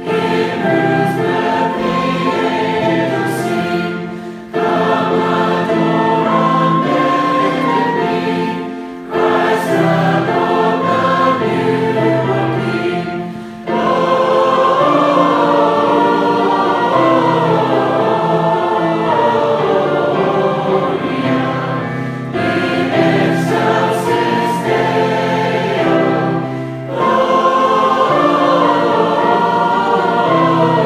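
A congregation sings a Christmas hymn together, accompanied by flute and violin. The singing comes in phrases, with a short breath dip between them every four to five seconds and one longer phrase in the middle.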